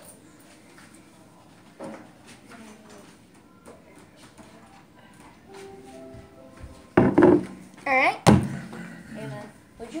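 Bottles being set down on a stone kitchen counter: loud knocks about seven and eight seconds in, with a short high-pitched voice between them. Before that, only faint movement and distant voices.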